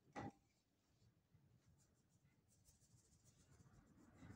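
Mostly near silence: one short knock about a quarter second in, then faint scratchy strokes of a paintbrush's bristles on wet paint on canvas, getting a little louder toward the end.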